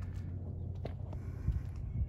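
Wind rumbling on a handheld phone's microphone, with two short knocks, one a little before the middle and one about three-quarters through.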